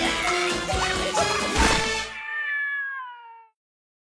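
Upbeat cartoon theme music that stops about two seconds in, leaving a cartoon cat's long meow that falls in pitch and fades out.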